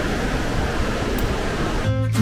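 Steady, even background noise of a busy hotel lobby. Guitar music comes in right at the end.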